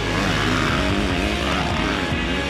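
Dirt bike engine revving, its pitch falling and then rising again near the end, over rock guitar music.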